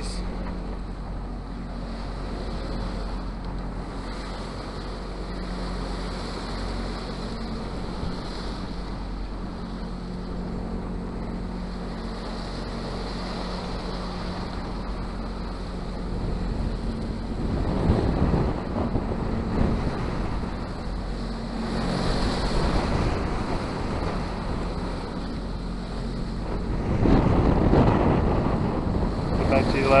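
Wind and water noise aboard a sailboat under sail at sea, over a faint steady low hum. Wind buffeting the microphone grows louder in two spells, about 17 seconds in and again near the end.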